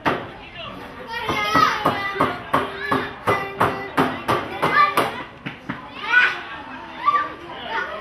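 Children's voices shouting and calling out at a youth football match. From about a second in to about five seconds there is a steady run of sharp claps, about three a second, under the voices.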